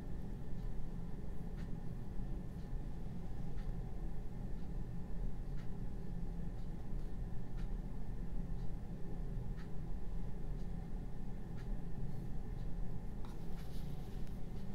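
Oil-paint brush strokes on a canvas panel, a soft scratchy brushing, over a steady low hum in the room. Faint short ticks come about once a second.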